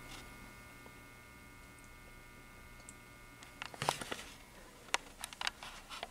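Magnetic ballast of an Allied T12 rapid-start fluorescent fixture humming faintly and steadily, a low hum with a thin higher buzz above it. From about halfway through, a scatter of light clicks and knocks.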